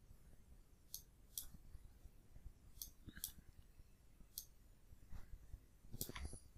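Near silence broken by about five faint, sparse clicks of computer keyboard keys.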